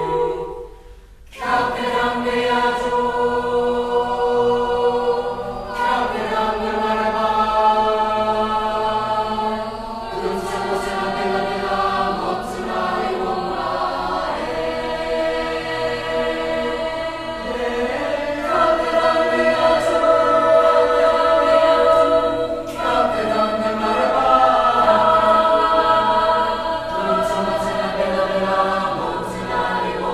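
Mixed-voice school choir singing in harmony. After a short break about a second in, the choir comes in on full, sustained chords that move from one to the next.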